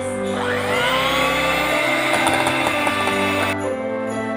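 Electric hand mixer starting up with a rising whine, then running steadily for about three seconds before stopping suddenly, under background music.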